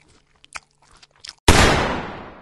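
Sound effects: a few faint crunching clicks, then about a second and a half in a sudden loud bang that dies away over about a second.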